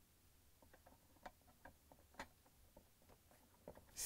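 Faint, scattered light clicks and taps of plastic dishwasher pump parts being handled and fitted together. There are about a dozen small ticks, the two sharpest about one and two seconds in.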